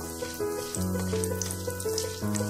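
Hot oil sizzling and crackling as a tempering of dal fries in a nonstick pan, under background music of held chords that change once about halfway through.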